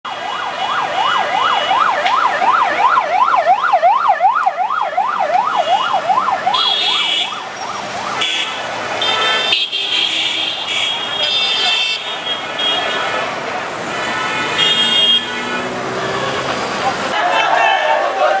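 Electronic yelp siren on a vehicle in a slow-moving line of cars, sweeping quickly up and down about three times a second for the first six or seven seconds. After it come short, repeated blasts of vehicle horns over traffic noise.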